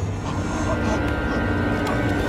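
Film sound effects: a low steady rumble with sustained high ringing tones that swells toward the end, under a man's strained cry.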